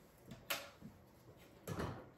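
Plastic hard-drive tray rail being handled: a sharp plastic click about half a second in as the side rail comes off, then a duller knock near the end as the parts are set against the tray.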